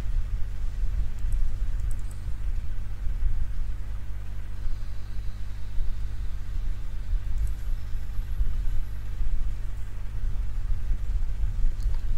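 A steady low hum with a deeper rumble beneath it, unchanging throughout.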